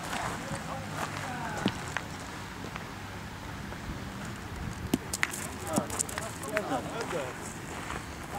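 Metal pétanque boules striking the gravel court and clacking against one another: a few sharp clicks, clustered about five seconds in.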